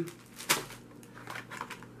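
Food packaging being handled on a table: a zip-top plastic bag set down and a small cardboard box picked up. There is one sharp click about half a second in, then a few light taps and crinkles.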